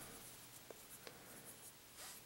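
Very faint rubbing of a cotton swab along a pistol barrel, spreading a thin coat of oil, with two faint ticks about a second in.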